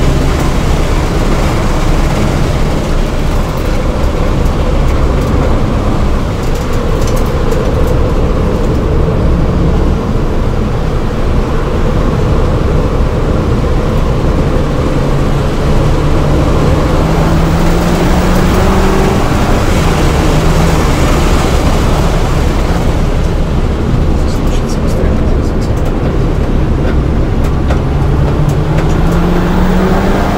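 In-cabin sound of a 2007 VW GTI's turbocharged 2.0-litre four-cylinder being driven hard on track, under road and wind noise. The engine note climbs for several seconds, drops suddenly about twenty seconds in, then climbs again near the end.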